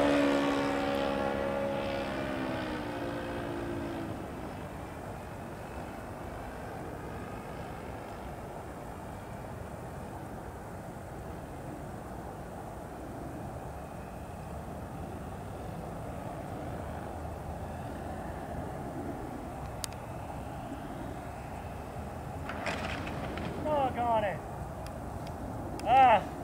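The RC P-40's Saito 1.00 four-stroke glow engine runs as the model passes, its pitch falling and its sound fading over the first few seconds. After that only a faint, steady haze remains while the plane is far off. Near the end come a few short, louder sounds as the model comes down on the grass.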